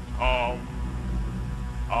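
A man singing a short chanted syllable about a quarter second in, and starting another right at the end, over a steady low hum.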